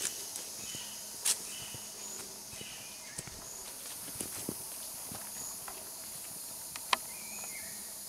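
Tropical forest insects buzzing in a steady high-pitched chorus, with footsteps on the forest path and a couple of sharp clicks, one just over a second in and one near the end.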